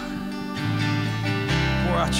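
Live worship band playing an instrumental passage led by strummed acoustic guitar. The sound fills out with deep low notes about one and a half seconds in.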